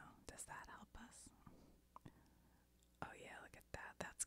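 Very faint whispered murmuring from a woman, with a few soft clicks in between.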